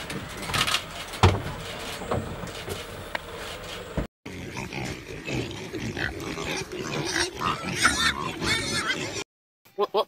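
Domestic pigs grunting and oinking in a busy run of calls through the second half, after a lion's rough, breathy sounds in the first four seconds, which cut off suddenly. The first pitched bleat of a goat comes at the very end.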